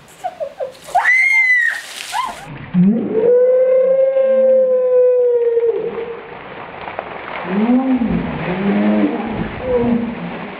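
A bucket of ice water tipped over a person, splashing down about a second in with a high shriek, followed by a long held scream and then a run of short yelping cries at the cold.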